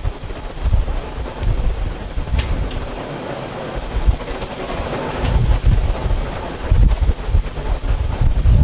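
Uneven low rumbling on the microphone, like air or handling noise, that swells and fades in gusts over a soft background hiss, with a couple of faint clicks.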